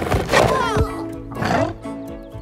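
Cartoon background music with two rough, growling animal calls over it: the first lasts most of the first second, the second is shorter and comes about a second and a half in.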